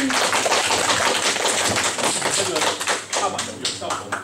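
A small audience applauding at the end of a keyboard piece, the clapping thinning out to a few scattered claps near the end.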